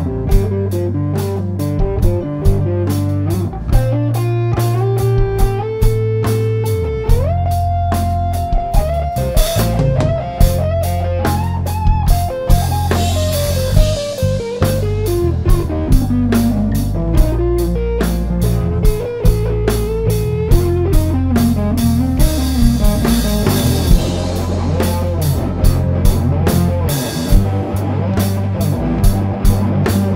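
Blues-rock band playing an instrumental break: an electric guitar lead of long held notes that slide up and down, over bass guitar and a steady drum beat.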